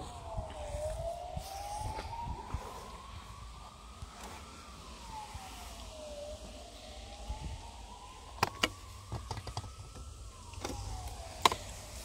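A faint siren wailing, its pitch sweeping down quickly and then climbing slowly back up, over and over about every five seconds. A few sharp clicks sound about two-thirds of the way through and again near the end.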